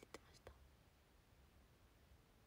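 Near silence: room tone after a few softly spoken trailing words at the start.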